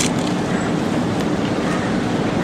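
Steady mechanical hum with a constant low tone over a bed of even background noise, with a couple of faint clicks at the very start.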